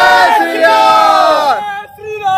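A group of men shouting together in one long, drawn-out chant that trails off shortly before the end.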